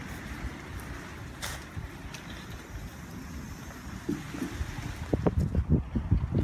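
Low, steady rumble of wind buffeting the microphone while the camera is carried on a walk, with a few faint footstep clicks, most of them near the end.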